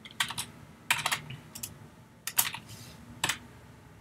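Computer keyboard keys being pressed: about a dozen separate keystrokes in short, irregular clusters, with pauses between them.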